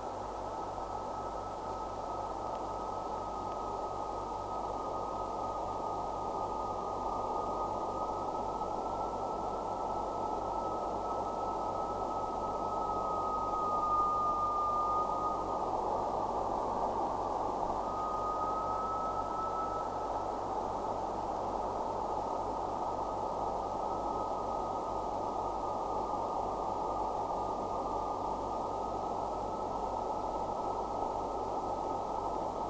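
Abstract electronic music: a steady hiss of filtered noise under a single held high tone that wavers slightly in pitch. About halfway through, the tone grows louder and dips, then fades out briefly before returning.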